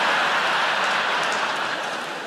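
Large theatre audience laughing and applauding, a dense, even wall of sound that comes in suddenly just before and eases slightly toward the end.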